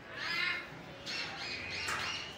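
A bird calling twice with high, harsh calls: a short one near the start and a longer one about a second in.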